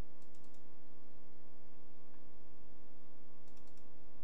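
Two quick bursts of computer mouse-button clicks, about four clicks each, one just after the start and one near the end, as folders are double-clicked open in a file requester. A steady low hum runs underneath.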